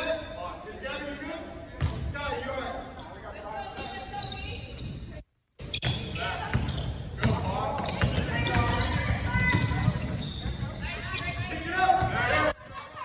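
A basketball being dribbled on a hardwood gym floor during play, with indistinct voices of players and spectators echoing in the large gym. The sound cuts out completely for a moment about five seconds in.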